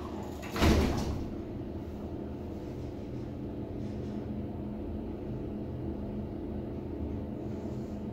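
The elevator's car doors close with a thud about half a second in. Then the 1979 US Elevator Highdraulic service elevator runs with a steady low hum as the car travels.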